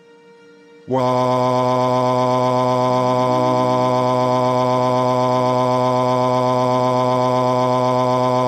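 A synthetic text-to-speech voice holding one long, flat "aaaa" wail. It starts about a second in and stays loud at a single unchanging pitch, without a break.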